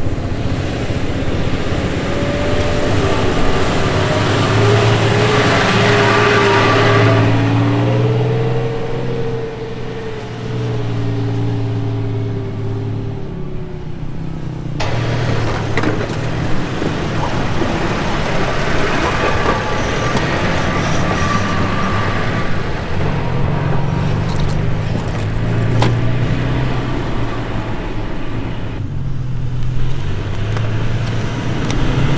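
A 2017 Toyota Tacoma TRD Off-Road pickup's engine working as it drives through soft sand, its pitch rising and falling with the throttle. The sound breaks off suddenly about halfway through and again near the end, where the shots change.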